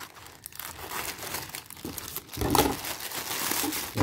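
Plastic courier mailer bag crinkling and rustling as it is cut open with scissors and pulled apart by hand, growing louder about halfway through.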